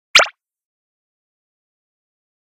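A single short water-drop plop just after the start, with silence on either side.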